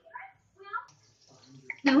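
Faint steady hiss of oil heating in a kadhai on the gas stove, starting about a second in, with a short click just before the end.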